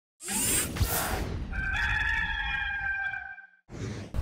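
Rooster crow sound effect in an intro sting: a rushing noise, then the crow's long held note, which ends about three and a half seconds in.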